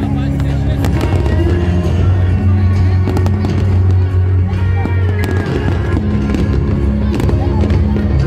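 An aerial fireworks display with many shell bursts banging and crackling in quick succession, over loud music with deep held bass notes.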